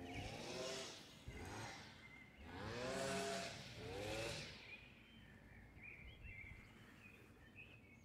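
Faint traffic heard from afar: a few cars pass one after another, the loudest about three seconds in, each engine note bending in pitch as it goes by. Small birds chirp faintly in the second half.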